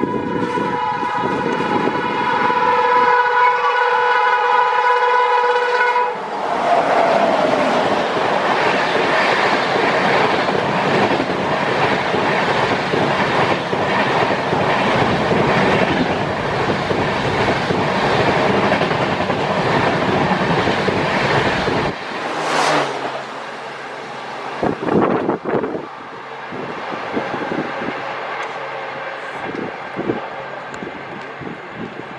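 An electric locomotive's horn sounds one long steady blast that stops about six seconds in, as a Humsafar Express of LHB coaches runs through the station at speed. After the horn, the passing coaches make a loud, dense rush for about fifteen seconds, then the sound drops to quieter running as the train draws away.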